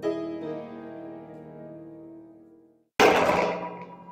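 Piano chords struck and left to ring, fading away to silence. About three seconds in, a sudden loud, noisy sound breaks in and dies down within a second.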